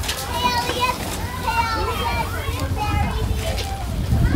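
Several young children's voices chattering and calling out high and excited as they play, over a steady low rumble.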